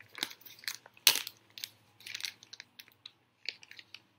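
A folded paper instruction leaflet being unfolded and handled: irregular rustling and crinkling, with one sharper crackle about a second in.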